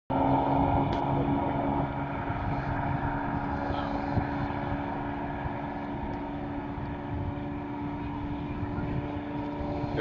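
A steady engine drone holding an even pitch, with wind buffeting the microphone.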